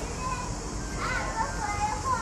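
Street ambience of several people's voices chattering, some high-pitched like children's, over a steady low hum of town noise.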